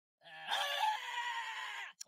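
A drawn-out scream, about a second and a half long, its pitch sinking slightly toward the end.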